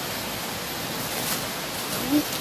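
A steady, even hiss of outdoor background noise, with no distinct event standing out.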